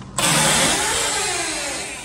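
A high-rise balcony door opened, letting in a sudden loud rush of wind and outside noise that fades slowly, with a tone running through it that falls in pitch.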